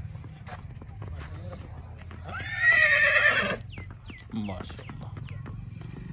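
A horse whinnies loudly once, about two seconds in, for a little over a second. Around it come the soft hoof steps of a horse walking on a dirt path.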